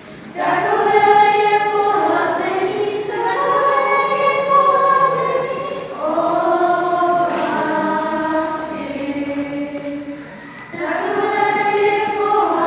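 A group of schoolchildren singing together as a choir in long held notes. The song pauses briefly just after it starts and again at about ten seconds, before the next phrase.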